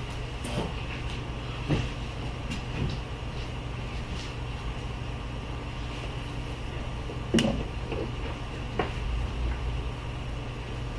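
Steady low hum of a large hall's ventilation, with scattered light knocks and clicks from handling and movement; the loudest knock comes about seven seconds in.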